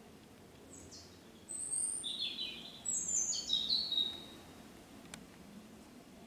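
A songbird singing: two high phrases of quick notes, each stepping down in pitch, one starting about a second in and the next about three seconds in.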